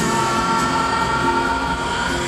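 Live rock band with its horn section holding a long sustained chord over guitar, bass and drums, heard through arena reverberation.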